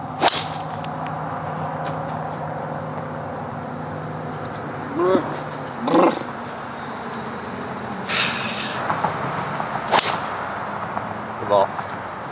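Two golf drivers striking the ball off the tee: a sharp crack just after the start and a second one about ten seconds in. Short shouts come between them, over a steady low hum.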